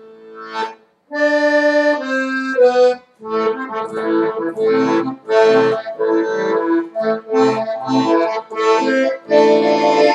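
Piano accordion improvising solo. After a brief pause about a second in, it plays three long held chords, then a run of short, rhythmic chords at about two a second.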